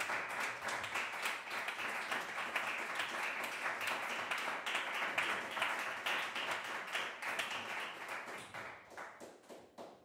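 Audience applauding. The clapping thins out and dies away over the last few seconds.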